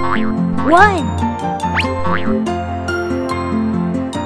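Bright children's cartoon music with playful sound effects: a springy boing that swoops up and back down about a second in, and a quick rising whistle-like sweep a little before the two-second mark.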